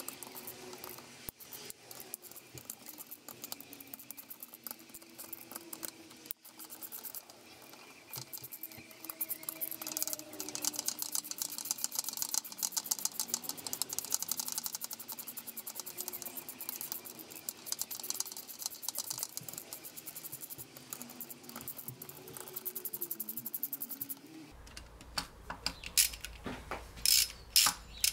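Hand ratchet wrench clicking in long runs of fast ticks as the gearbox casing bolts are spun out one after another, with a few louder separate clicks near the end.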